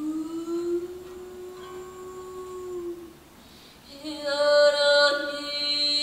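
A woman singing slow, long-held wordless notes in a live acoustic performance. One sustained note slides slightly upward for about three seconds and fades. After a short pause, a louder, fuller held note comes in about four seconds in.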